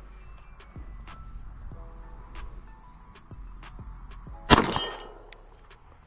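A single 9mm pistol shot from a Springfield Prodigy 5-inch 2011 about three-quarters of the way through, with a short echo trailing off over about half a second; before it only faint background.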